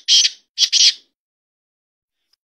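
Black francolin calling from close by: a short run of loud, harsh, rasping notes, three in quick succession, the call ending about a second in.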